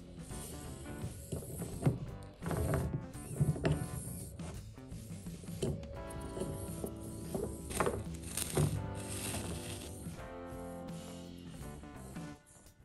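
Background music over the small whirring and clicking gears of a micro RC car's tiny N10 geared motor as it drives.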